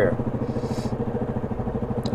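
Yamaha 700 ATV's single-cylinder four-stroke engine idling steadily with an even, rapid putter while the quad stands still.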